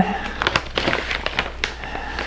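Irregular crinkling and small clicks as a plastic measuring scoop is dug into a crinkly bag of powdered shake mix.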